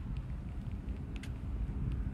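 Low, steady outdoor background rumble, with a couple of faint clicks a little after a second in.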